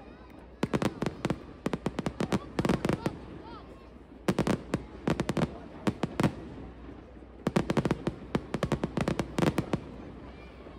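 Aerial fireworks going off: three volleys of rapid bangs and crackles, each lasting about two seconds, with short lulls between them.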